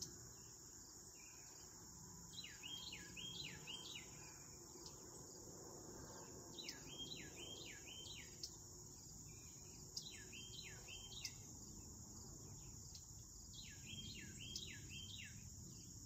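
Faint, steady high chirring of an insect chorus, with a bird singing three short phrases of four or five falling whistles, a few seconds apart.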